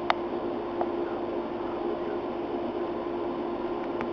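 Lady Dazey hood hair dryer running: a steady motor hum over an even rush of blown air. A sharp click right at the start.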